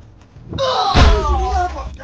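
A man crying out without words, his voice falling in pitch, with one sharp thump about a second in, as one man grabs another and wrenches his arm behind his back in a scuffle.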